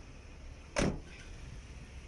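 Outdoor street ambience: a low steady rumble of traffic, with one short, loud rush of noise a little under a second in.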